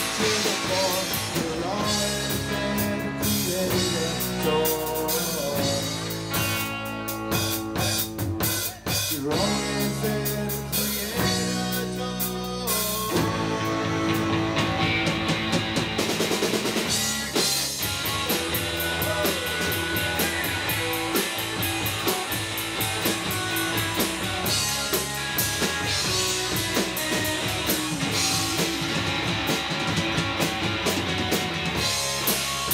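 Live rock band playing an instrumental passage on electric guitars, electric bass and drum kit, with a brief drop in the sound about nine seconds in.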